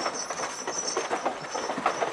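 Horse-drawn carriage in the street: irregular hoof clops and wheel rattles, several knocks a second.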